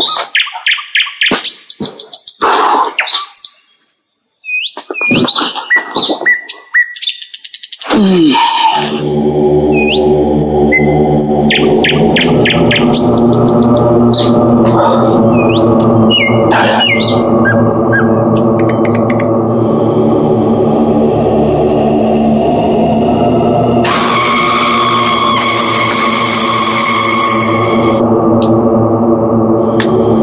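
Birds chirping and trilling in short calls. From about nine seconds a sustained droning music chord comes in underneath, and a brighter, higher layer joins it near the end.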